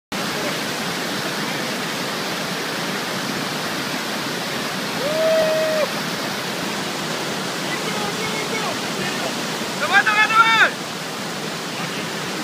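Whitewater river rapids rushing steadily, a continuous loud wash of water noise. A voice calls out with one held note about five seconds in, and someone shouts again near ten seconds.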